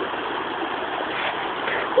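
The Deerfield River rushing steadily over rocks in shallow rapids, running high.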